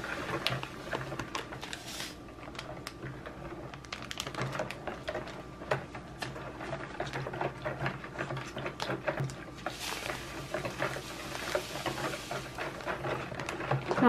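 Metal wire whisk stirring gelatin powder into hot water in a plastic bowl: steady swishing of the liquid with many quick, irregular clicks of the wires against the bowl.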